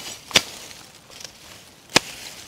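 Machete chopping through grass and plant stems: two sharp strikes about a second and a half apart.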